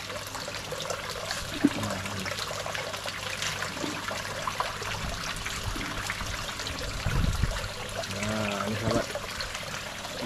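Water pouring steadily from an inlet pipe into a tarp fish pond, with tilapia splashing at the surface as they take feed pellets. A brief low rumble about seven seconds in.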